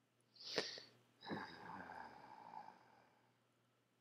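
A man's short, sharp nasal burst about half a second in, followed by a longer voiced, non-speech sound that lasts about two seconds and fades out.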